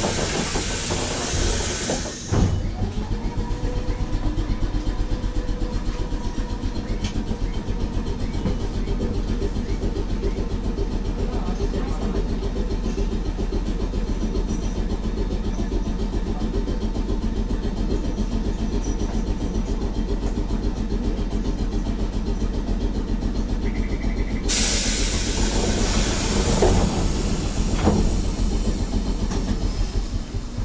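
Mobo 621 electric tram's air equipment while the tram stands still: a burst of air hiss, then a machine under the car, most likely the air compressor, spins up and runs with a fast, even chugging for about twenty seconds, then another long air hiss near the end.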